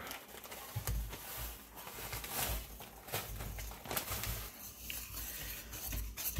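Plastic bag of brown sugar rustling and crinkling as the sugar is poured and shaken out into a stainless steel mixing bowl, with soft irregular pattering and a few brief sharper taps.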